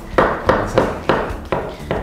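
Kitchen knife slicing button mushrooms on a wooden cutting board. There are about six chops, roughly three a second, each blade stroke knocking against the wood.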